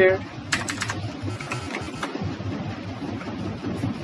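Computer keyboard keys clicking as a short message is typed: a quick run of keystrokes in the first two seconds, over a steady low background rumble.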